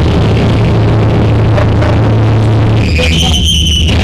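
Live hardcore punk band playing loud and distorted: a held, droning wall of distorted guitar and bass. About three seconds in, the low drone drops away and a high, steady feedback whine rings on its own.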